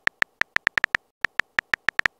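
Simulated smartphone keyboard key-tap clicks as a text message is typed out: a quick, uneven run of about fourteen short, high clicks, with a brief pause just past the middle.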